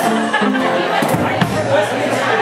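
Acoustic guitar playing a few held single notes in the first half second, then a few sharp knocks about a second in, over a room full of crowd chatter.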